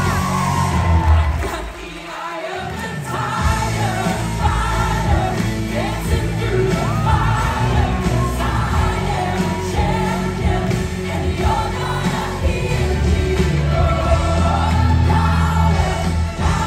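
Live pop music from a Broadway musical's curtain call: the cast singing together over the band's heavy beat, with the audience cheering along. The bass drops out briefly about two seconds in, then the full band returns.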